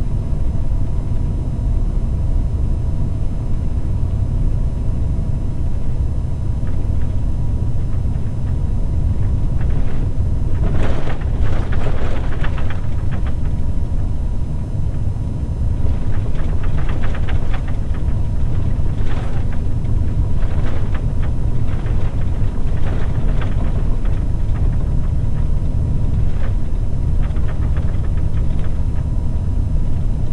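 Road train driving on an unsealed gravel road: a steady low rumble of engine and tyres, with clusters of crackling and rattling about ten seconds in and again through the second half.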